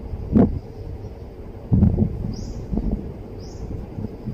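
Low dull thumps, one about half a second in and a heavier pair near the middle, over a steady low rumble. A bird chirps briefly several times, about once a second.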